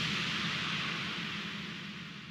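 Tail of an electronic intro sting: a hissing noise swell over a low steady drone, fading away gradually.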